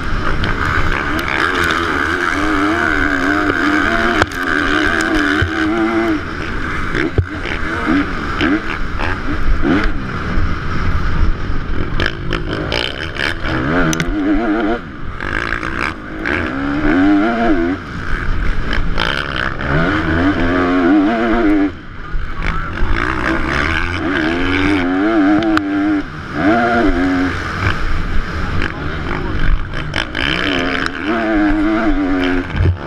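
A 450-class motocross bike's engine, heard from the rider's helmet, revving up and falling back again and again through gear changes and corners, with a brief throttle-off about fifteen seconds in and again a few seconds later. Wind rushes steadily over the microphone, with scattered sharp knocks.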